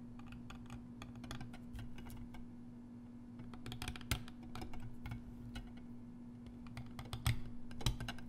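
Steel carving knife cutting and scraping a stone seal, making many small irregular clicks and scratches in short clusters, a few sharper ones around the middle and near the end. A faint steady hum runs underneath.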